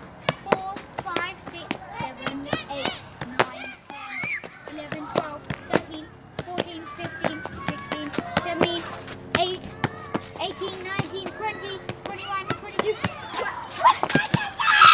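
Football being kicked up again and again in kick-ups, a run of sharp, irregular thuds, with children's voices and chatter among them.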